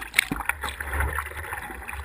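Kayak paddle strokes and water splashing and lapping against the bow of a squirt boat, heard close up from a bow-mounted camera, over a low rumble. A sharp splash about a fifth of a second in.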